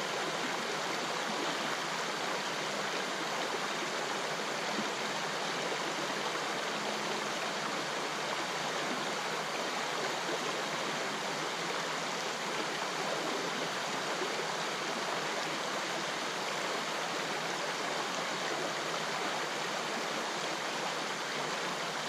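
River water running over a shallow stony riffle: a steady, even rushing.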